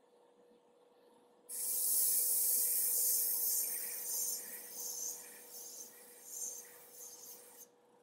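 Gravity-feed airbrush spraying paint: a hiss of air starts suddenly about a second and a half in, holds steady, then swells and dips several times and cuts off near the end.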